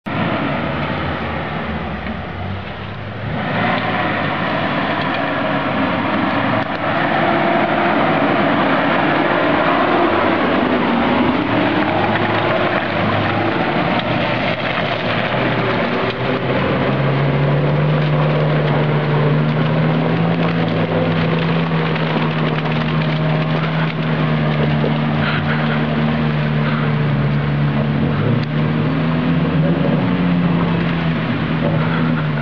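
Engine of a Suzuki Jimny 4x4 working up a muddy forest track under load; the revs dip and rise about ten seconds in, then hold a steady note from about seventeen seconds.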